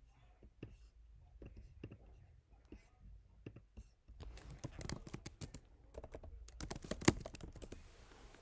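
Typing on a computer keyboard: scattered clicks at first, then a quick run of keystrokes as a short terminal command is typed, with one harder keystroke near the end.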